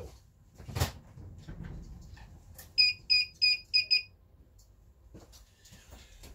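Hikvision IDS-7216 AcuSense DVR's audible-warning buzzer beeping five times in quick succession, about four beeps a second, about three seconds in: motion detection has triggered the alarm. A single knock about a second in.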